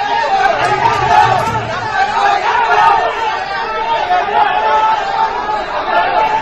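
A crowd of protesters shouting, many loud voices overlapping at once.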